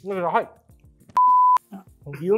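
A single steady electronic bleep about half a second long, starting and stopping abruptly about a second in, after a brief spoken exclamation.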